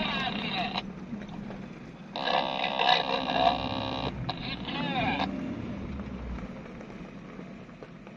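Thin, narrow-sounding voice transmissions over a two-way radio between convoy crews, switching on and off abruptly: one ends just under a second in, another runs from about two to five seconds in. Under them is the low, steady running of the Suzuki Jimny's engine, heard inside the cabin.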